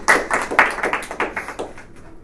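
Audience applauding, the clapping fading away over the last second.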